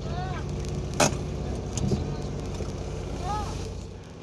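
Car engine running at low speed while parking, a steady low hum, with a sharp click about a second in.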